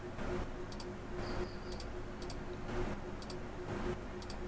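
A few sharp computer mouse clicks, some in quick pairs, over a faint steady electrical hum.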